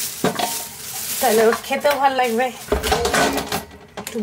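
Kitchen clatter of metal and knocks at a steel sink as raw chicken is handled and cut on a boti blade, with a sharp knock about a quarter-second in. A voice talks through the middle.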